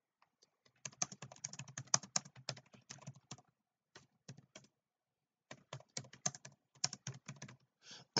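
Typing on a computer keyboard: two runs of rapid key clicks with a pause of about a second between them.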